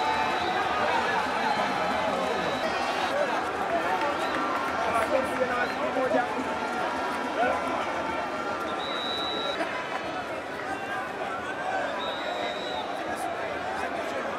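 Many people talking at once: overlapping chatter of a crowd around the pitch, with no single voice standing out. A short high-pitched steady tone sounds twice in the second half.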